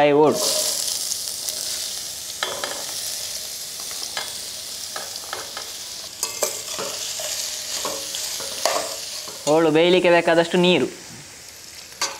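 Chopped watermelon rinds dropped into hot oil in a steel pan, setting off a loud sizzle that starts suddenly and slowly dies down as the pieces are stirred, with scattered clinks of a steel spoon against the pan. A voice speaks briefly about ten seconds in.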